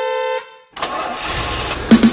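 A held electric-keyboard note cuts off, and after a short pause a motorbike engine starts and runs in a noisy, rising rumble. A sharp click comes near the end.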